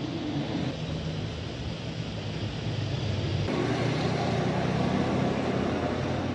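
Street traffic noise: a steady low engine hum under an even rush of noise, shifting abruptly about three and a half seconds in.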